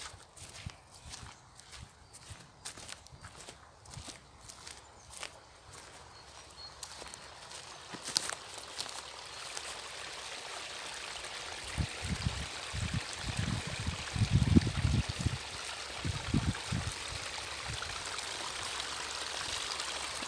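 Footsteps on meadow grass, evenly paced, then a small stream trickling steadily and growing louder in the second half, with a few low thumps.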